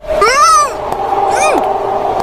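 Two high, arching, meow-like vocal calls, the first about half a second long and the second shorter, over a steady hum.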